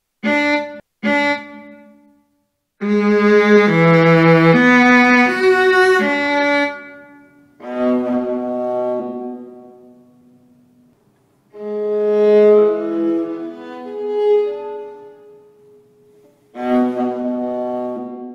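Viola played back in MuseScore as bowed notes in several short phrases with brief pauses between them. The phrases compare a note at its written pitch with the same note lowered 25 cents, an eighth of a tone.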